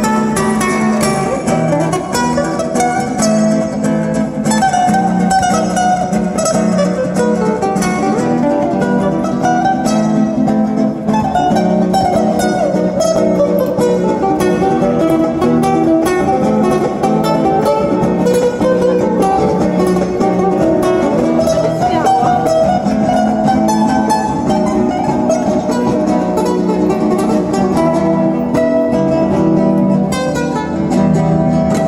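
Ortega Jade-NY Jewel Series acoustic-electric guitar played solo and amplified, fingerpicked: a fast run of plucked notes over a steady low accompaniment, continuous and even in level.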